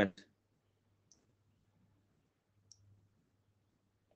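The last of a spoken word, then a quiet room with a faint low hum and two faint, short clicks about a second and a half apart.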